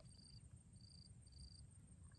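Faint insect chirping outdoors: short high trills of about a quarter second, repeated about twice a second, over a faint steady high whine.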